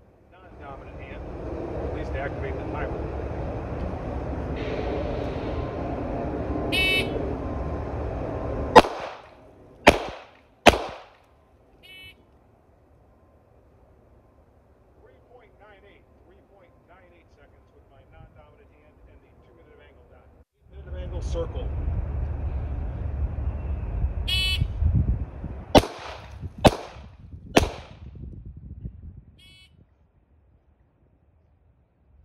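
Two strings of three handgun shots, fired one-handed: the first string about nine to eleven seconds in, the second about 26 to 28 seconds in. Each string is preceded by a short high beep from a shot timer. Wind rumbles on the microphone before each string.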